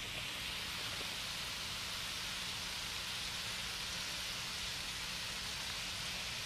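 Shrimp and zucchini sizzling in hot oil in a skillet, a steady, even hiss.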